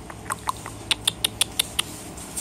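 A quick run of short, sharp clicks, evenly spaced at about five a second.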